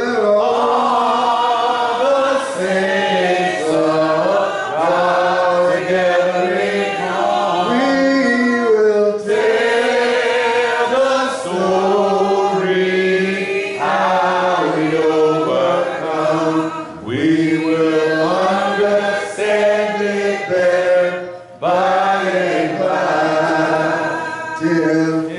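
A church congregation singing a hymn together, unaccompanied voices in long held phrases with brief pauses between lines.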